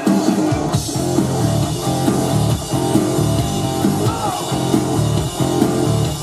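Rock music: an electric guitar playing a distorted rhythm riff along with a rock backing track, the full band coming in loud right at the start.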